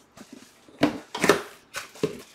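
A few short rustles and scrapes of packaging being handled, three brief bursts about half a second apart, starting a little under a second in.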